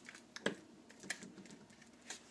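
Faint, scattered light clicks and taps of stiff cardstock being handled, folded and pressed together to close a small glued paper box.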